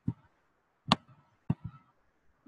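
Computer mouse clicking: a few sharp, separate clicks, the last two in quick succession.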